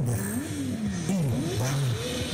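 Motorcycle engine revving in quick blips, its pitch rising and falling about three times.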